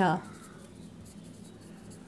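Marker pen writing on a whiteboard: faint strokes as a word is written out by hand.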